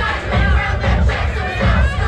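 Loud dance music with a steady bass beat playing through the DJ's speakers, with a crowd of dancers singing and shouting along.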